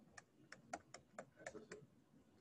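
Faint, quick ticks of a stylus tapping a screen while handwriting: about ten light clicks, unevenly spaced.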